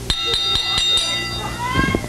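A child's long, steady, high yell held for over a second amid the scuffle of a kids' wrestling battle royal, with a few sharp knocks in the first second and another voice rising near the end.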